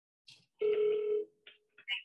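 A short click, then a steady telephone beep lasting a little over half a second, as a phone line connects to the PhoneBurner dialer system.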